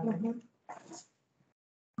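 A voice over a video-call line trailing off on a drawn-out vowel, then a brief breathy sound about a second in, after which the audio cuts out to dead silence.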